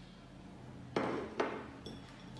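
Two short ceramic clattering bursts about a second in, about half a second apart, as a ceramic plate of game discs is lifted off a rigged dice-game mat and set down on a wooden table, followed by a few faint small clicks.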